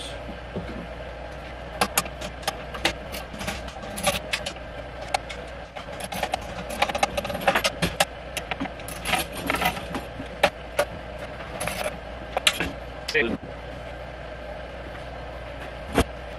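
Wrenches clicking and clinking on the metal handle bolts of an Earthway garden seeder as they are tightened, in irregular runs of sharp clicks.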